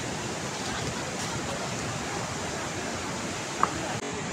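Steady rushing roar of a fast mountain river, with a short, sharp high tone near the end.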